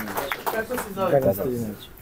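A man's voice talking quietly, off the microphone, fading out near the end.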